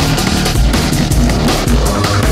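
Dark neurofunk drum and bass music playing loud and steady: fast, busy drums over a thick, sustained bassline.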